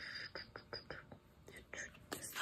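Faint handling sounds of a cardstock tag being moved and set down on a paper album page: light scattered taps and soft paper rustle.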